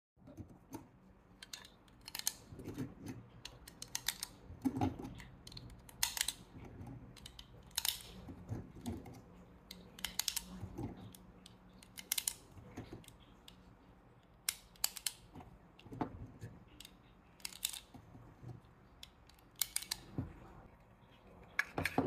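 Cartridges being thumbed one at a time into a Glock 19 pistol magazine by hand, each round snapping in under the feed lips with a sharp click, roughly one click every second or two at an uneven pace.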